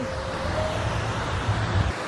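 Steady outdoor background noise while walking: a low rumble under a broad hiss, with no clear single source.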